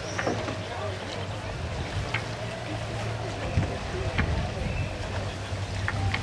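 A steady low hum runs under faint, indistinct voices, with a few light clicks.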